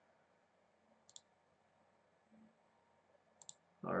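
Faint computer mouse clicks over quiet room tone: one click about a second in and two in quick succession near the end.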